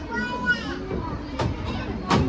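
Children's voices at a playground: a high-pitched child's call in the first half-second, then more children playing, with a sharp knock about a second and a half in.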